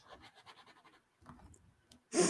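Near silence: room tone with faint, light scratching.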